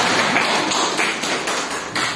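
Audience applauding with many hands, dying away near the end.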